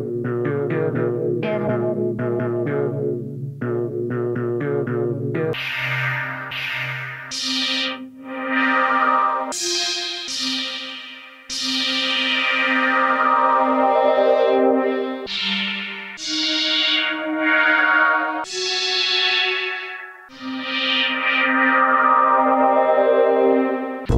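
Hardware synthesizer played live through studio monitors. For about five seconds it plays a quick run of short, plucked notes, then it changes to long sustained chords that swell and fade, a new chord every one to two seconds.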